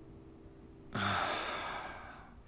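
A man's long, tired sigh, breathed out about a second in and fading away.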